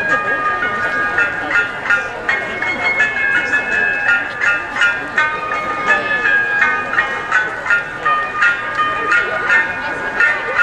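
Traditional Japanese dance music accompanying a nihon buyo fan dance, played over a stage loudspeaker: a high melody moving in stepped, held notes over a regular beat of sharp strikes about twice a second.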